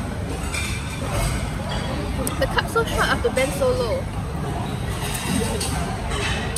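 Cafe ambience: indistinct voices talking in the background over a steady low hum of room noise, with a few light clicks.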